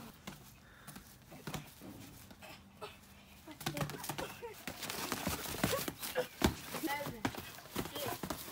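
Boxing gloves landing punches in irregular, scattered hits, with short children's shouts and exclamations breaking in from about halfway through.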